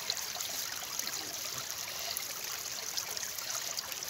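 Steady rushing, trickling noise like running water.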